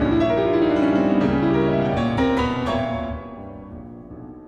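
Solo piano music on a Yamaha grand piano, many notes played with both hands; the phrase thins out and dies away over the last second.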